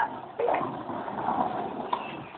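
Skateboard wheels rolling over concrete pavement, a continuous rough rolling noise, with a sharp click near the end.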